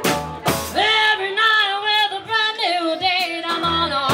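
Live country band: a woman sings long held notes with a wide vibrato over guitars and upright bass. The band strikes a chord at the start, plays sparsely under the voice, and comes back in fully near the end.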